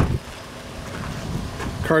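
Wind buffeting the microphone: a low, uneven rumble between spoken words.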